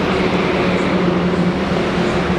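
Steady engine hum with a low drone, over outdoor noise.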